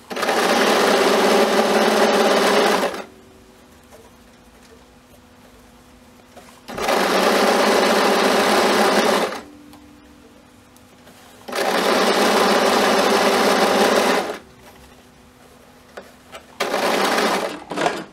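Domestic electric sewing machine stitching a hem in four runs. The first three last about two and a half to three seconds each, the last is shorter, and there are quiet pauses between them.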